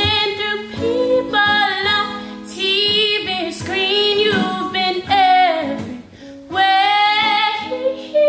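A woman singing a soul song in sliding, held phrases, accompanied by acoustic guitar.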